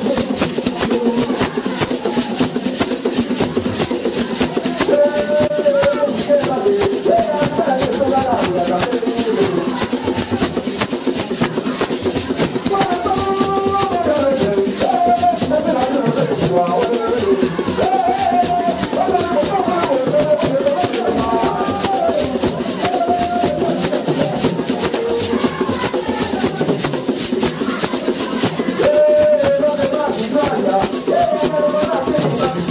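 Traditional Congolese dance music: a group of voices singing over a fast, steady shaker rattle that runs without a break.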